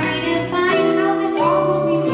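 A woman singing into a microphone, holding and sliding between notes, backed by a jazz band with saxophones, piano and drum kit, cymbal strokes keeping a steady beat.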